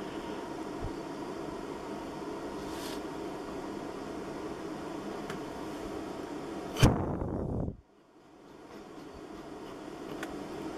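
Steady hum of bench electronics, with one sharp click about seven seconds in as a button on the oscilloscope is pressed. Right after, the background cuts out to near silence for about a second and slowly returns.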